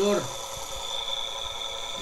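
Permanent-magnet electric motor of about 360 W running steadily on battery power, giving a constant high-pitched whine with an even hum under it.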